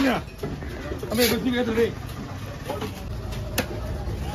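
A heavy knife chopping through fish onto a wooden log block, with two sharp chops, about a second in and near the end. A man's voice calls out briefly around the first chop.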